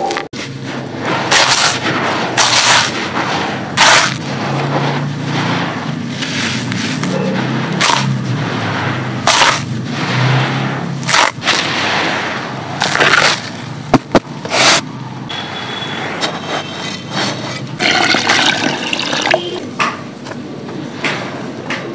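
Dry, gritty sand-cement being crumbled and scraped by hand in a tub, making a run of short gritty crunches. Over the last few seconds water is poured into a clay pot.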